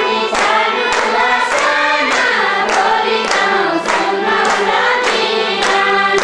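A group of women singing a song together in unison, keeping time with hand claps about twice a second, over a steady low drone.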